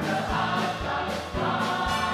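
Worship song: a group of voices singing together over a live band of electric guitar, bass guitar, keyboard and drums, with a steady kick-drum beat about twice a second.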